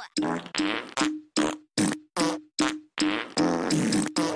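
A cartoon sound effect: a run of about ten short, identical pitched blips, about two and a half a second, each fading quickly, one for each bottle popping onto the screen.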